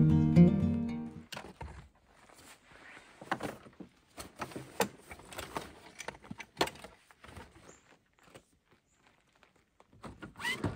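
Acoustic guitar music that stops about a second in, then scattered knocks, thuds and rustling as bags and gear are handled and packed in a car's open boot, thinning out near the end.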